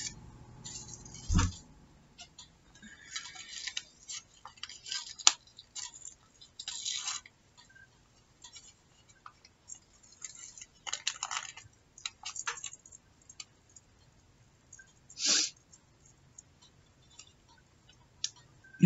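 Small silver-coloured craft embellishment pieces clinking and scraping together as they are tipped from a small plastic container into a palm and sifted by fingers, with scattered light clicks and rustles. A dull thump about a second in.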